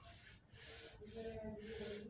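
Pen scratching on paper as lines are drawn: short strokes, about two a second.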